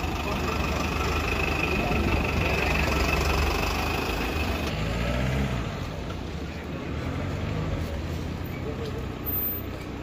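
Street traffic with a motor vehicle engine idling close by, a steady low hum with a high whine over it; it drops away about halfway through, leaving quieter street noise and voices.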